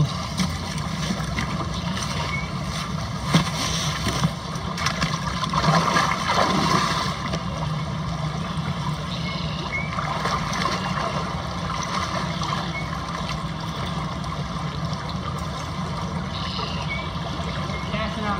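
Steady rush of a flowing river, with a few light clicks a few seconds in.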